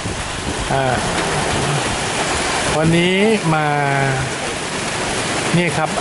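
Rain falling steadily, a dense even hiss.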